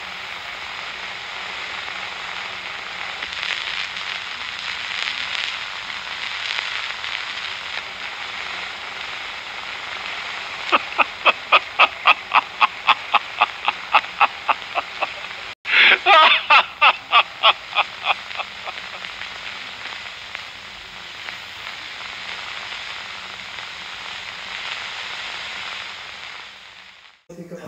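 Steady hiss of an old film soundtrack, then about ten seconds in a man laughing, a quick run of 'ha' pulses, three or four a second. After a short cut a louder run of laughter follows, then the hiss again.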